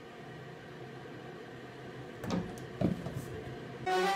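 Faint steady room hum, broken by a few short knocks or taps a little over two seconds in and again near three seconds.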